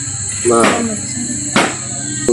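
Crickets chirping steadily in a high, even drone, with a brief spoken sound about half a second in and a sharp click at about a second and a half.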